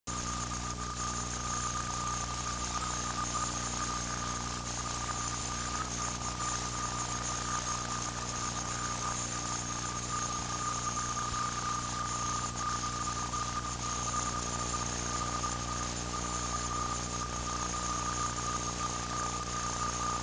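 A steady high-pitched whine over a low electrical hum and constant hiss, unchanging throughout: noise on an old videotape's soundtrack rather than game sound.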